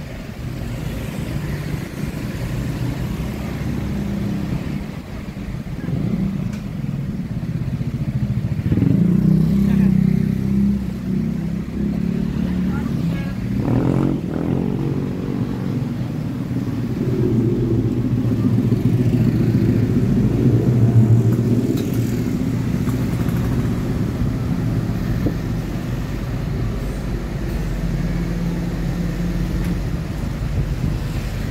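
Street traffic: motorcycles and a car pass close by, their engines running, over a steady low engine hum. The traffic is loudest about a third of the way in and again past the middle.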